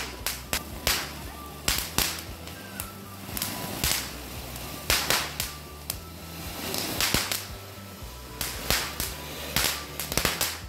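Diwali firecrackers: sharp cracks going off irregularly, roughly two a second, over the steady hiss of a ground firework spraying a jet of sparks.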